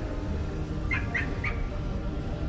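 Three quick, high squawks about a second in, close together, over a steady low street hum.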